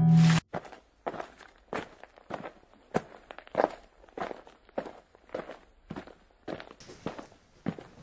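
Guitar music cuts off about half a second in, followed by footsteps at an even walking pace, a little under two steps a second.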